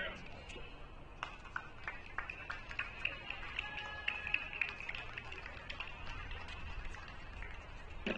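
Faint background voices and music, with scattered sharp clicks and taps.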